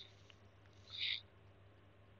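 A man's two short breaths close to the microphone, one right at the start and one about a second in, over faint steady hum and hiss.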